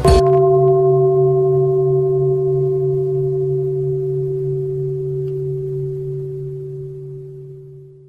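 A bell struck once, ringing with a deep hum and a few higher tones that fade slowly and are cut off after about eight seconds. The stroke marks the break between two chapters of the recited sutra.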